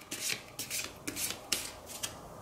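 Tarot cards being shuffled in the hands: a quick run of short papery swishes, about four a second.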